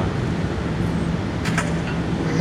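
Steady outdoor background noise with a constant low hum underneath, and a brief click about a second and a half in.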